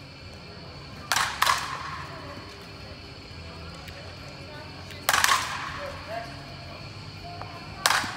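Softball bat hitting balls in a batting cage: sharp cracks with a short ring, two in quick succession about a second in, another about five seconds in, and one more at the very end.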